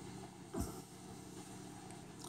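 Quiet room tone with a faint steady hum and one soft, brief handling knock about half a second in as the pistol is held in the hand.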